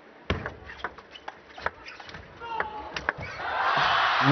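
Table tennis rally: the celluloid-type plastic ball clicks sharply off rackets and table about a dozen times at an uneven pace. About three seconds in, as the point ends, the arena crowd breaks into cheering that swells toward the end.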